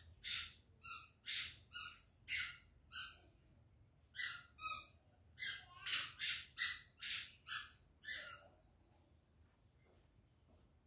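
A bird chirping: a rapid run of short, sharp, high-pitched chirps, two to three a second, that breaks off for about a second a little after the middle, resumes, and stops well before the end.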